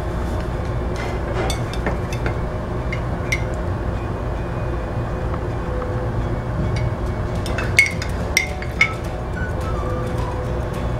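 A metal spoon clinking against a ceramic mug as sweetener is stirred into a drink: a few sharp clinks in the first few seconds, then three in quick succession near the end, over a steady low hum.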